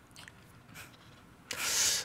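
Faint room tone, then about one and a half seconds in, a half-second hissing rush of breath close to the microphone.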